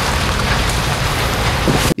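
Steady hiss of rain falling, cutting off suddenly near the end.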